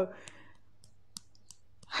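A few faint, sharp clicks scattered over about a second and a half, the loudest a little past the middle, over low room noise.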